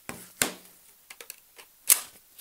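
A 26V V-mount battery being fitted onto a V-mount plate: a few hard plastic clicks and knocks, with the loudest, sharpest click near the end as the battery latches onto the mount.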